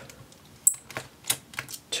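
About five light, sharp clicks and taps spread over two seconds, from small hand tools and parts being handled over an opened laptop.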